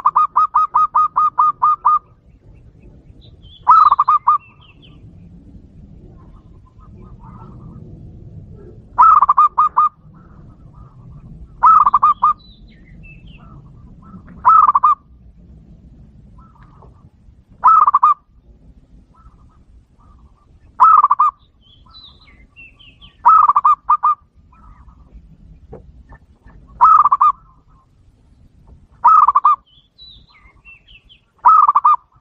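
Zebra dove (perkutut) calling. It opens with a rapid run of about ten short cooing notes, then gives nine short cooing phrases, each repeated every two to three seconds.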